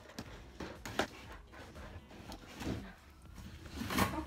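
Cardboard parcel being opened by hand: scattered rustling and crinkling of the box flaps and packaging inside, with a sharp crack about a second in and a louder rustle near the end as an item is pulled out.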